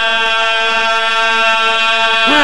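A man's voice holding one long, steady chanted note, with pitch glides on either side: the melismatic singing of a zakir's majlis recitation, amplified through a microphone.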